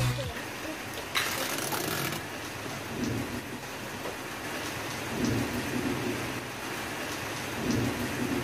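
Steady noisy hiss with a low rumble, and a brighter burst of hiss lasting about a second, starting about a second in.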